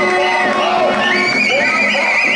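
Long high whistle-like tones over crowd voices: one held steady, then from about a second in another that wavers in pitch.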